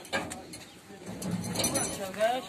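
Used rubber tyres being heaved and dropped onto a pile in a truck bed: a knock just after the start and a clatter of knocks near the end, over background chatter of men's voices.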